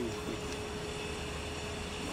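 Steady low background rumble with a faint constant hum and hiss, without words.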